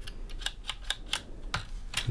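A string of small, irregular clicks and taps from the accordion's removed register-switch assembly being handled and worked with a small metal tool, its sticking buttons and levers being tried.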